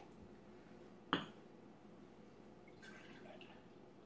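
Beer being poured from a glass bottle into a drinking glass, a faint liquid trickle and splash.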